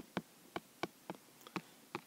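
Stylus tapping on an iPad's glass screen during handwriting: a string of short, sharp, irregular clicks, about three or four a second.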